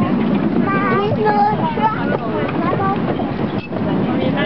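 Ride-on miniature train running along its track, a steady low rumble, with voices over it.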